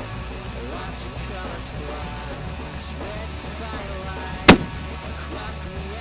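Rock music with guitar plays throughout, and about four and a half seconds in a single extreme-long-range rifle shot rings out, short and very loud above the music.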